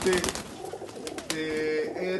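Domestic pigeons in a loft: a few quick wing claps as one takes off, then a short, steady pigeon coo in the second half.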